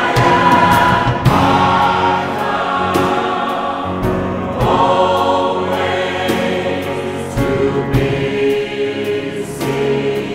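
Mixed choir singing in long held phrases, backed by piano and a drum kit whose cymbal and drum strokes mark the beat.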